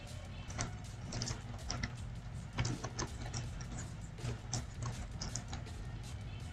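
Computer keyboard keys clicking in quick, irregular runs as a line of text is typed, over a low steady hum.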